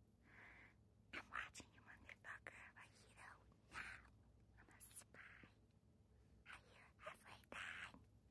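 Very faint whispering and breathy mouth sounds from a woman, in short puffs with small mouth clicks between them.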